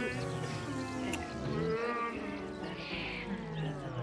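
Music playing from a record player, which sags steadily downward in pitch near the end as the turntable slows and winds down.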